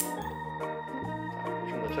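Background organ music with sustained chords over a bass line that steps from note to note. Right at the start, one sharp snap of an expandable steel baton locking open.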